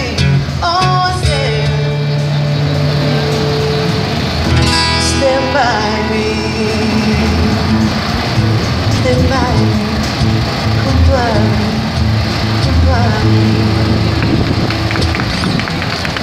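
Live acoustic band: a woman singing into a microphone over acoustic guitar and cajón, her voice heard mainly in the first half. The singing drops out toward the end while the guitar plays on.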